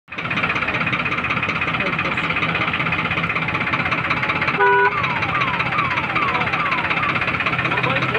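Farmtrac 60 4x4 tractor's diesel engine running steadily close by, a dense clatter with a low hum under it. About halfway a horn sounds briefly, followed by a run of about five short falling tones, roughly two a second.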